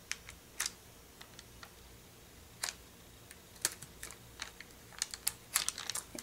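Sparse, light clicks and taps of metal tweezers and a clear plastic sheet of mini glue dots being handled on a craft table, with a few quick ones together near the end.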